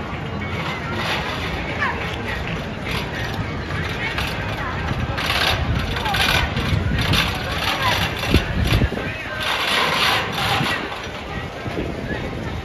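Spinning roller coaster cars running along steel track overhead, the wheels' rumble rising in surges as the cars pass, mixed with riders' and bystanders' voices. A low thump stands out about eight seconds in.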